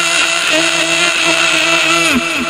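A human voice screaming a long, loud 'aaaah', held on one pitch, with a brief break about half a second in: the dubbed 'screaming marmot' yell.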